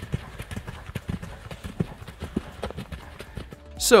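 A loose horse's hooves striking a dirt arena in a run of irregular dull beats, with background music underneath.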